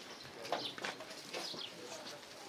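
Birds calling: a few short, high chirps.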